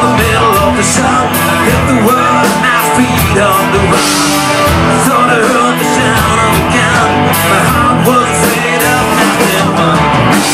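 Southern rock band playing live: electric guitars over bass and drums with cymbals, a lead guitar line bending and wavering between notes.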